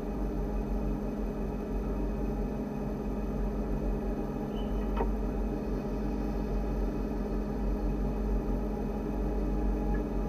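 Steady electrical hum with several held tones over a low rumble from a standing electric train's equipment, with a single short click about halfway through.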